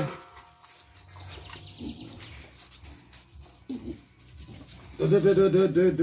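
A dog whining while begging for a treat: a short whine about halfway through, then a louder drawn-out wavering moan near the end.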